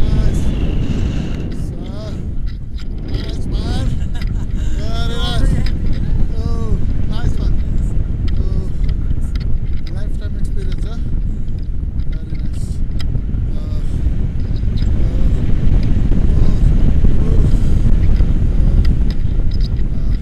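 Strong wind rushing over the microphone of a selfie-stick camera in tandem paraglider flight: a steady low rumble that eases briefly about two seconds in and builds again later.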